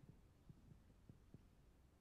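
Near silence: room tone with about five faint, low knocks spread over two seconds.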